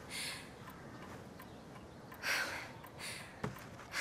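A person's quiet breathing and sniffing: a few breaths, the loudest about two seconds in, with a small click near the end.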